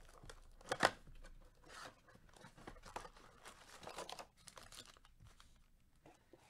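A 2020 Panini Prizm Football blaster box being torn open by hand and its foil packs pulled out. Paper and cardboard tear and rustle quietly, with light crinkling of the foil wrappers and one sharp click a little under a second in.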